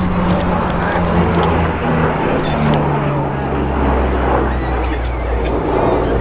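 Lockheed C-130 Hercules flying low overhead on its four turboprop engines: a loud, steady propeller drone whose pitch sinks slowly as it passes, with a deeper drone growing stronger about halfway through as it banks away.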